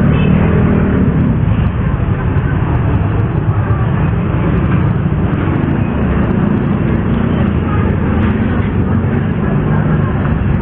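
Loud, steady street traffic noise, with vehicle engines running nearby.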